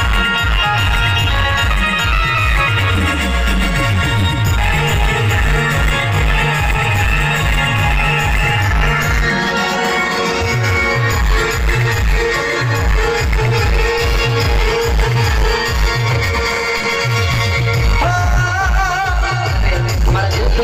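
Live band playing Timli dance music: electronic keyboards carry the melody over a fast, driving low beat. A wavering lead line comes in near the end.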